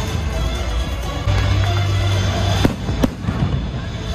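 Fireworks show: shells bursting and crackling over loud show music, with two sharp bangs close together about two and a half to three seconds in.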